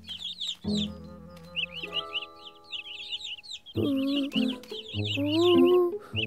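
A flock of cartoon chicks cheeping in quick, high little peeps over gentle background music. A short, pitched, voice-like sound rises above them near the end.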